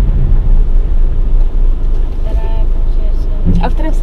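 Steady road and engine noise inside a moving car's cabin, a low rumble, with a brief soft voice about halfway through and another near the end.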